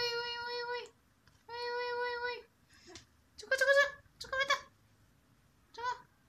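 A high voice calls two long, held 'hey' notes, then gives three short squeals that waver in pitch, the loudest sounds here.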